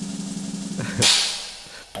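A drum roll that ends about a second in with a cymbal crash, which fades away over the next second.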